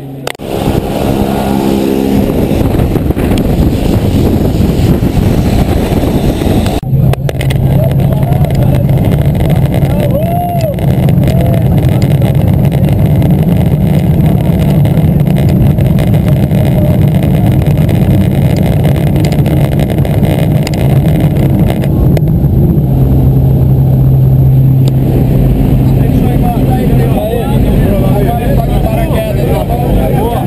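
Single-engine light aircraft's piston engine and propeller running loud and steady, heard from inside the cabin.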